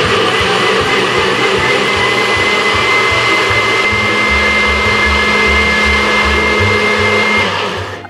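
NutriBullet blender motor running steadily at full speed, blending cashews and coconut milk, with a constant high whine over the churning noise. It winds down near the end.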